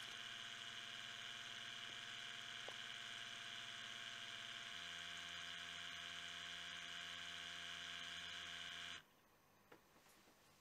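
Small internal sample pump of a MultiRAE Benzene gas monitor running with a steady, faint hum as it draws air through the benzene tube during a measurement. Its tone changes about halfway through, and it stops suddenly about a second before the end as the measurement finishes.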